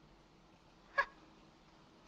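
Quiet film soundtrack with one brief pitched vocal sound about a second in, a single short scoffing laugh.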